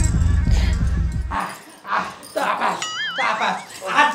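Background music with a heavy bass line cuts off abruptly about a second and a half in. Excited shouting voices follow, along with a short wobbling, warbling comic sound effect near the end.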